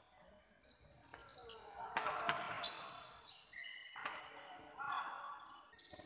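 Badminton rally on an indoor court: sharp racket strikes on the shuttlecock, the clearest about two and four seconds in, with short squeaks of shoes on the court floor and faint voices.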